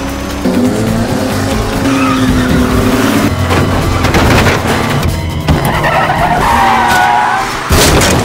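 Race car engines running hard at speed on a wet track, with tyre and spray noise. A sudden loud crash impact comes near the end.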